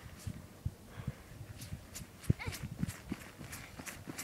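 Footsteps crunching in snow at a walking pace: an irregular run of short crunches and soft thuds, with one brief rising pitched sound a little past halfway.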